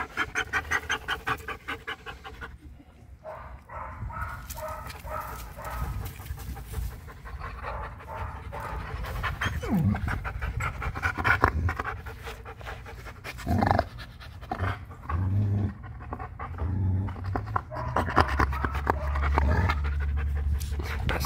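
Wolfdog panting with its mouth open, quick rhythmic breaths about five a second, plainest in the first couple of seconds.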